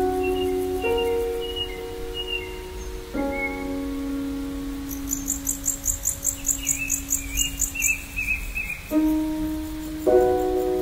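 Gentle New Age relaxation music: soft keyboard chords struck every few seconds and left to ring, layered with nature sounds of chirping birds. In the middle a high, rapidly pulsing insect-like trill joins the birdsong.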